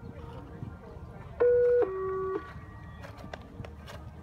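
A two-note electronic tone over the arena's public address, about a second and a half in: a higher note for under half a second, then a lower note for about half a second, each held steady.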